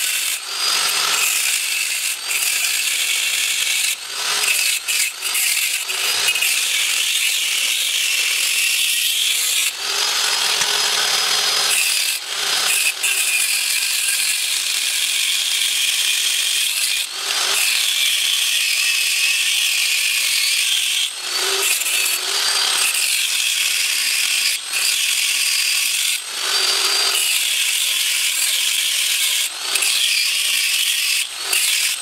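Small electric angle grinder cutting into the cast-iron edge of a 3.4 pushrod V6 engine block. It gives a steady, high-pitched grinding with a faint whine, broken by short pauses every few seconds as the disc eases off the metal.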